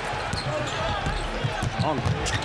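Basketball being dribbled on a hardwood arena court over steady crowd noise.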